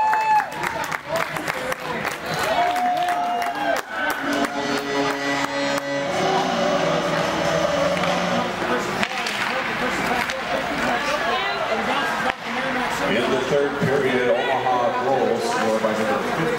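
Hockey-rink crowd cheering and shouting after a goal, then music over the arena speakers, starting with a held chord about four seconds in.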